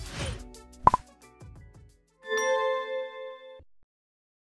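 Electronic logo sting: a single sharp pop about a second in, then a held chime of several steady tones from about two and a half seconds, cutting off abruptly just before the end.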